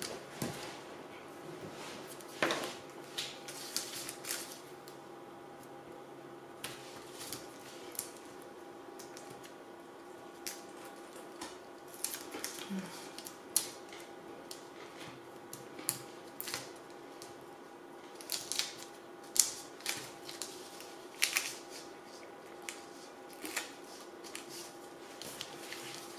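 Hands handling cardstock and small pieces of clear adhesive tape: scattered short rustles and light taps at irregular intervals, over a faint steady hum.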